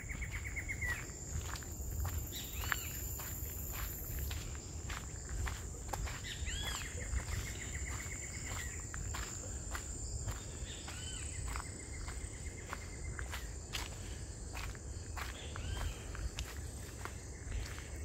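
Footsteps on a gravel road at a steady walking pace, over a continuous high-pitched insect drone. Short rapid trills sound every few seconds.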